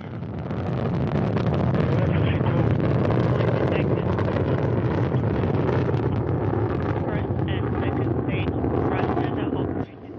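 Soyuz FG rocket's first-stage engines, the four strap-on boosters and the core, running at full thrust during ascent: a loud, steady, deep rumble. It swells over the first second or so and drops away sharply near the end.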